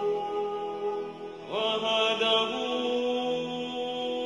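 Devotional chanting music: a voice holds long sung notes over a steady drone, with a new phrase sliding in about one and a half seconds in.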